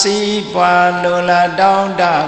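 A monk's single male voice chanting in a sustained, melodic recitation tone. It holds long even notes that step slightly up and down, with brief breaks between phrases.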